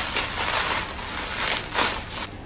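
Plastic bubble wrap crinkling and crackling as it is crumpled and stuffed into a shoe.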